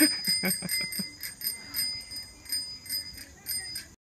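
Toddler bicycle with training wheels rolling while pushed, giving a high metallic ringing chirp about four times a second in step with the wheels' turning. A short laugh comes right at the start.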